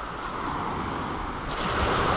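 Steady rushing noise of wind and sea on a shingle beach, growing louder about a second and a half in.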